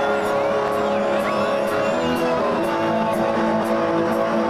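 Live punk rock band with sustained distorted electric guitar chords ringing out and a cymbal struck about twice a second, heard through a crowd-level audience recording.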